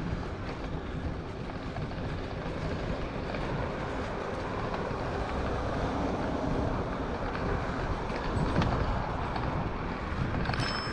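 Steady rumble and wind rush on the microphone from a bicycle riding along an asphalt cycle path, the tyres rolling on the pavement.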